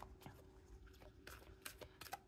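Faint, irregular soft clicks and flicks of a deck of cards being shuffled by hand, over near silence.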